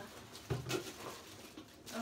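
Gift packaging being handled: cardboard and wrapping knocking and rustling while a small glass aroma diffuser is unpacked, with two short knocks about half a second in.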